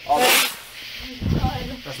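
A firework going off with a short, loud hiss, followed about a second later by a low rumble.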